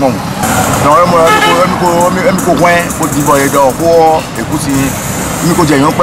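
A man talking, over street traffic with motorcycle engines running behind him.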